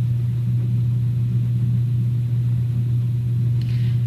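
A steady low electrical hum with faint hiss, unchanging and with no other sound. It is hum picked up in the recording's microphone chain, the same hum that runs under the narration.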